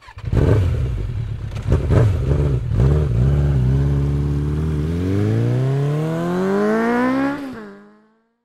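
Motorcycle engine revving: a few rough, clattering blips, then a steady note that climbs in pitch as it accelerates, drops suddenly near the end and fades out.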